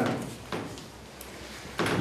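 A short pause in a man's speech, filled with room tone and a faint click about a second in.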